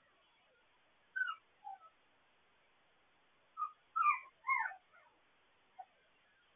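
Puppies whimpering: several short, high cries that fall in pitch, the loudest three close together about four seconds in, heard thinly through a pet camera's microphone.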